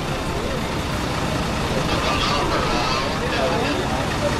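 Street noise: the steady rumble of a running vehicle engine and traffic, with people's voices in the background.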